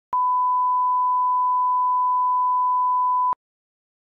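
Steady 1 kHz reference test tone played with television colour bars, one unbroken pure beep of about three seconds that starts and stops sharply.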